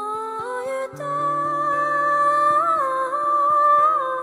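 A woman's voice singing a long held note with no clear words, sliding up at the start and wavering partway through, over steadily fingerpicked acoustic guitar that changes chord about a second in.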